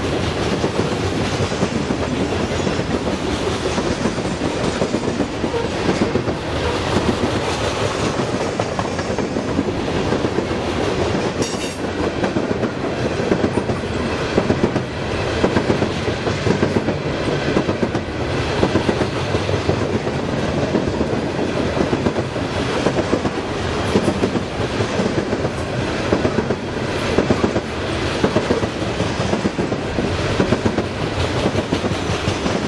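Freight train of steel coal hopper cars rolling past close by: a steady rumble of wheels on rail, with clusters of clacks repeating as each car's wheelsets cross the rail joints.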